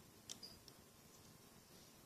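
Near silence with a few faint, short clicks in the first second: a loom hook working rubber bands on a plastic Rainbow Loom.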